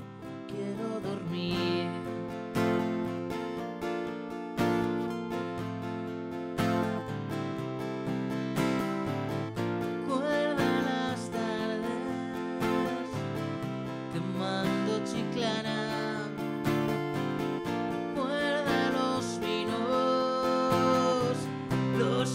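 Acoustic guitar strummed steadily, with a man's voice singing at times, about ten seconds in and again toward the end.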